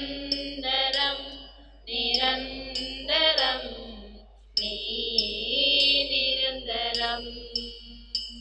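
Devotional church music during Holy Communion: a chant-like sung hymn with accompaniment, coming in phrases of one to two and a half seconds with short breaks between them.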